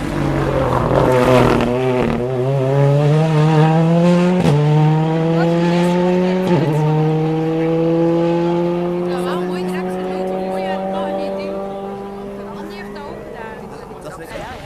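Rally car engine dropping in pitch as the car slows, then accelerating hard through the gears with two upshifts, about four and a half and six and a half seconds in. It then holds a steady, slowly rising note that fades as the car goes away.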